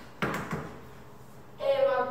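A hard object set down on a table top: a sharp knock about a fifth of a second in and a smaller one just after. A person's voice starts briefly near the end.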